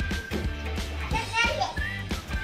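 Background music with a steady beat and a held melody line, with a child's voice over it about halfway through.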